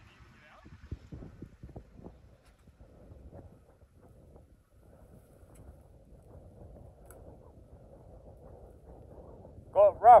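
Ford F-150 pickup crawling slowly over rocks: a faint low rumble with a few crunches and clicks of stone under the tyres, the sharpest about a second in.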